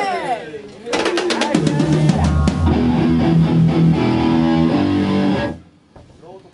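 Live punk band on stage: a voice at the start, then about a second in the drums, cymbals, guitar and bass crash in together and play a short loud burst of chords for about four and a half seconds, cutting off suddenly.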